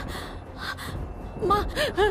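A woman crying: gasping, breathy sobs, followed by a couple of short voiced sobs near the end.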